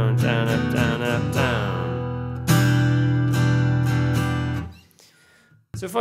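Steel-string acoustic guitar strummed down and up, really slowly, in an even rhythm. A last chord is struck about two and a half seconds in and left to ring for about two seconds before it dies away.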